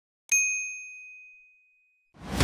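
A single bright bell-like ding, struck about a third of a second in and ringing away over about a second and a half: the notification-bell chime sound effect that marks the bell icon being clicked.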